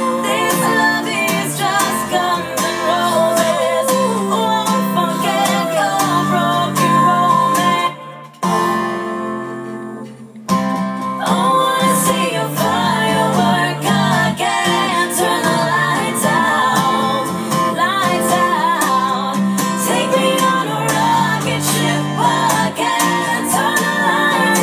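Acoustic guitar song with singing. The music drops low for about two seconds, some eight seconds in, then comes back in full.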